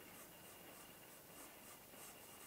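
Faint scratching of a coloured pencil lead on paper as it draws a line, with a thin steady high tone underneath.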